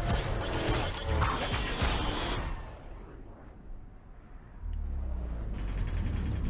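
Action-movie trailer sound effects: loud mechanical clattering and rattling that drops away about two and a half seconds in, then a low rumble comes back near the end.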